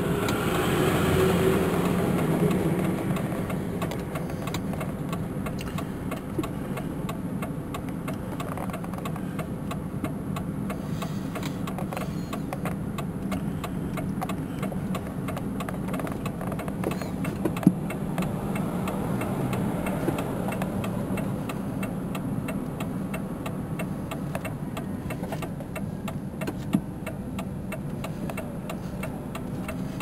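Steady engine and road hum heard from inside a car's cabin while driving slowly, somewhat louder for the first few seconds. A couple of sharp clicks stand out later on.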